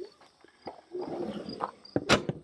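Faint crickets chirping, with a stretch of rustling and light knocking from about halfway through.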